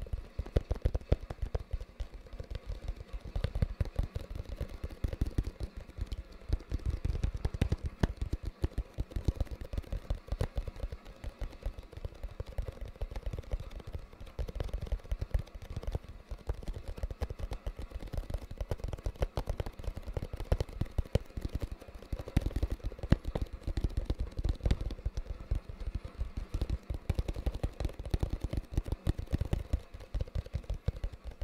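Fingertips tapping rapidly on a cardboard retail box held close to the microphone: a dense, unbroken run of soft taps, each with a low thud.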